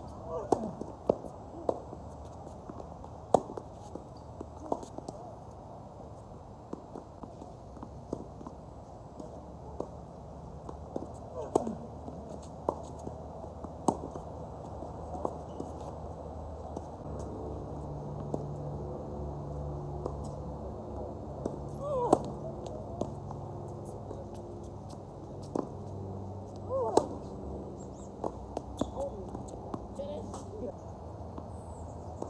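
Tennis ball struck by racket strings and bouncing on a hard court during points: sharp pops at irregular intervals, a few seconds apart or closer in quick exchanges, over a steady low background hum.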